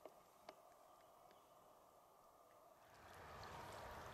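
Near silence, with two faint clicks in the first half second. About three seconds in, a faint steady hiss of outdoor background noise rises.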